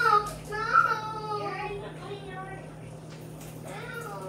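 A young child's high-pitched voice calling out in drawn-out, unclear sounds, louder in the first two seconds and then fainter, over a steady low hum.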